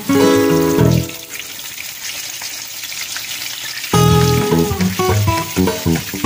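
Whole fish frying in hot oil in a nonstick pan, a steady sizzle. Guitar music plays over it for about the first second, drops out, and comes back in near the end.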